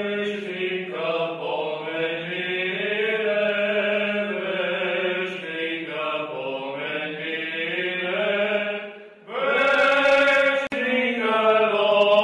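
Voices chanting an Eastern Orthodox memorial-service hymn together, slow and sustained over a steady low held note. The chanting breaks off briefly about nine seconds in, then resumes louder.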